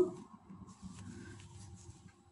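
Faint, soft rustling of a crocheted yarn vest being handled and smoothed in the hands.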